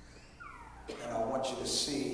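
A man's voice speaking through a handheld microphone, with a long, drawn-out vowel that falls in pitch about half a second in, then continuing in speech.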